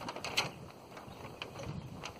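A few faint clicks and creaks over a light hiss from the land yacht's Tyvek sail, its battens and its steel frame shifting and flexing in the wind.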